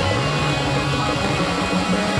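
Live funk-soul band playing at full volume: drum kit, bass guitar, electric guitars, saxophones and keyboards together, with a bass note sliding upward at the start.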